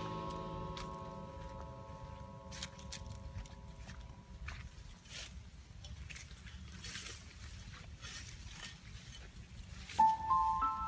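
Background music fading out over the first few seconds. After that, faint outdoor sound: a low steady rumble with scattered light rustles and clicks, as people move through grass and brush.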